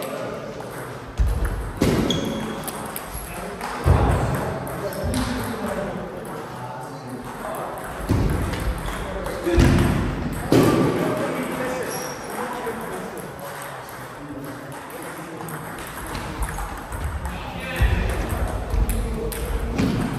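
Table tennis ball being struck by rubber-faced bats and bouncing on the table during play, a series of short clicks and knocks, with people talking in the background.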